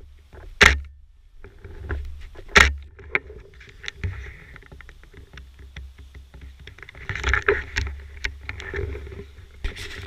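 Rustling, crackling and handling noise of a camera carried along a night-time forest path, with two loud thumps about half a second and two and a half seconds in, over a steady low rumble on the microphone.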